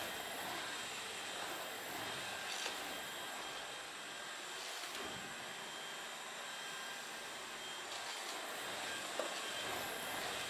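Steady, even rushing noise of a cordless stick vacuum cleaner running, with a couple of faint knocks.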